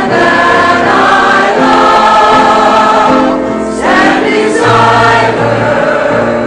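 Church choir of men and women singing together in sustained chords, with a short break between phrases about three and a half seconds in.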